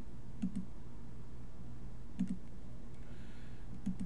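Computer mouse clicking a few times: two quick double clicks and one more near the end, over a steady low hum.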